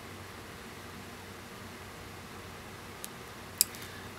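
Steady low hiss of room tone in a small room, with a faint tick about three seconds in and a sharp click shortly before the end.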